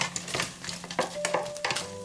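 A utensil clicking and scraping in the air-fryer tray as chunks of hot chicken are turned over and stirred, in a quick run of sharp clicks.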